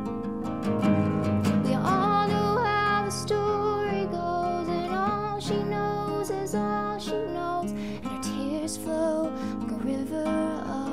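A solo acoustic guitar strummed steadily, with a woman's voice singing over it in places: a live singer-songwriter performance.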